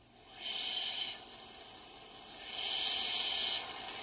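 Two bursts of airy hiss, each about a second long, the second louder.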